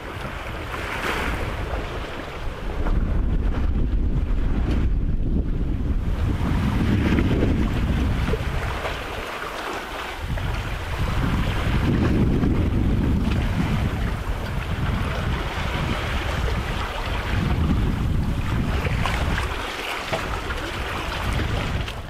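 Wind buffeting the microphone and sea water rushing along the hull of a sailboat under way in choppy open ocean. The low rumble swells and eases every few seconds.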